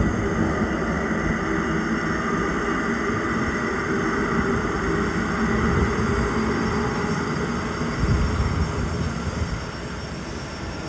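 Steady rumble of a London Underground Northern line train running through the deep-level tunnel near the platform below, a continuous noise with no breaks.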